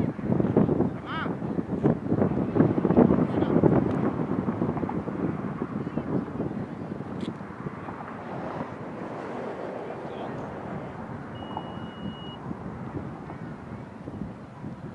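Wind buffeting the microphone, stronger in gusts over the first few seconds and easing after, with faint, unintelligible voices of players calling across the field.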